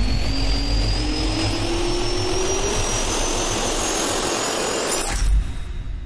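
Jet-engine spool-up sound effect: a rising whine over a steady rush of air, ending about five seconds in with a deep hit that then fades away.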